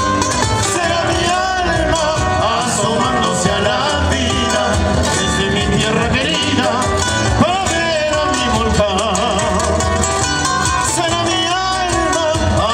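Live band playing Latin American music through a PA: strummed acoustic guitars and bass under a wavering melody line with vibrato.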